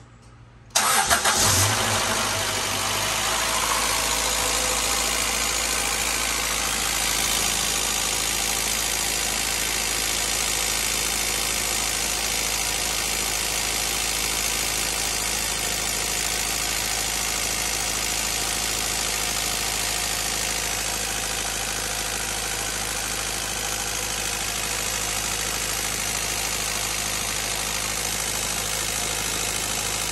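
A 2000 Acura Integra GSR's B18C1 four-cylinder engine starts about a second in, flaring briefly, then settles into a steady idle.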